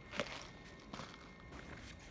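Three footsteps on a hard floor, roughly a second apart, the first the loudest, with a little bag and handling rustle.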